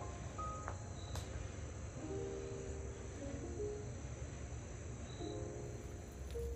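Steady high chirring of crickets, with a low rumble underneath and a few faint soft music notes.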